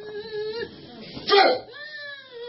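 A woman wailing: a high, held moan that breaks into a louder cry a little past the middle, then slides down in pitch.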